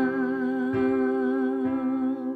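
A woman's voice holds one sung note with vibrato over a C major chord on a piano keyboard. The chord is struck again about a third of the way in and once more near the end.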